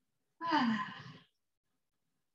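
A woman says "good" once, her pitch falling, with near silence around it.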